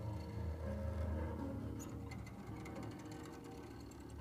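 Quiet instrumental backing from a small improvising jazz group: a low sustained bass line under held keyboard notes, with light ticking percussion through the middle.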